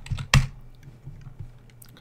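Computer keyboard keystrokes: a few clicks, the loudest about a third of a second in, over a faint low hum.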